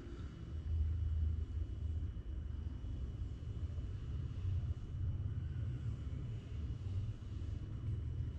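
Low, uneven outdoor rumble, with no shot fired.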